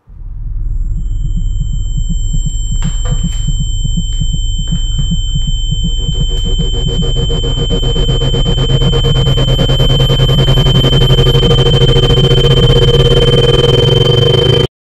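Electronic drone score: steady high-pitched sine tones over a throbbing low rumble, slowly growing louder.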